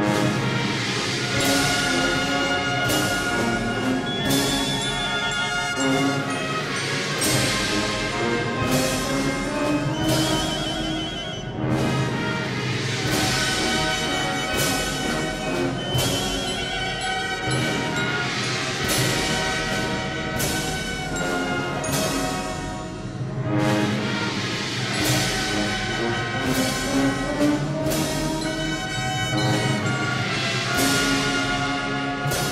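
Brass band with drums playing a slow processional funeral march, the drum strokes keeping a steady beat about once a second under sustained brass chords.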